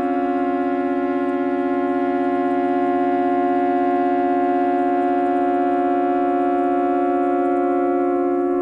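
Minimal electronic synthesizer music: a sustained chord of many steady tones with a fast, even pulsing, held without change.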